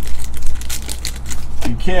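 A trading-card pack wrapper crinkling as it is pulled off, with the cards being handled, over a steady low hum. A man starts talking near the end.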